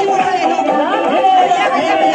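Several people talking at once, with song music playing underneath.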